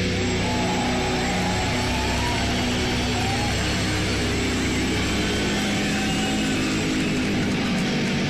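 Loud live heavy metal band: a dense wall of distorted electric guitar with held low notes and a few sliding, gliding guitar tones over it.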